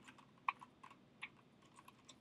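About six faint, separate key clicks from a calculator being keyed in to work out a division.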